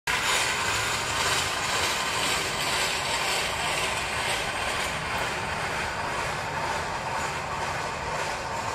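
Steady mechanical running noise: a continuous hiss with a faint steady whine underneath.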